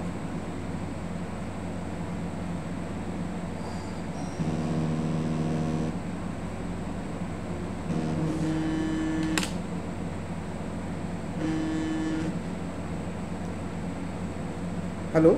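A mobile phone vibrating with an incoming call: three steady buzzes about three and a half seconds apart, the first two about a second and a half long and the last shorter, over a steady background hum.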